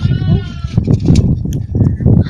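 A goat kid bleats once with a wavering call at the start, over loud, uneven low rumbling and short knocks.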